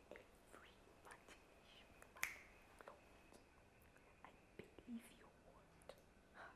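Near silence with faint scattered clicks and soft rustles, the sharpest click about two seconds in.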